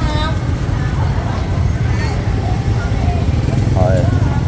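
Busy street-market background: motor scooters riding slowly past over a steady low rumble, with snatches of people talking nearby.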